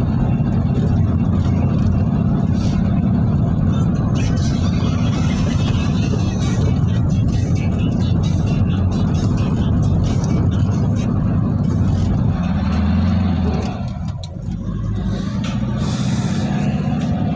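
A car driving, heard from inside its cabin: a steady low rumble of engine and road noise that dips briefly near the end.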